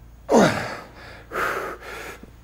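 A man breathing hard under the effort of a heavy barbell lift: a loud forced exhale with a falling, groaning voice about a third of a second in as he comes up, then two quick breaths near the end.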